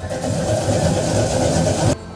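Fresh ginger being grated on a round metal grater: a loud, continuous rasping scrape that cuts off abruptly near the end.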